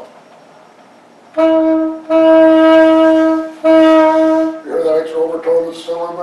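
Alto saxophone sounding the same note three times, a short note, then a long held one, then a shorter one, loud and full-toned, blown with the air carried right through the instrument to the bell.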